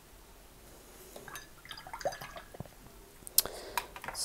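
Paintbrush being rinsed in water and tapped against the jar and palette: light watery ticks and small clicks, with one sharper click about three and a half seconds in.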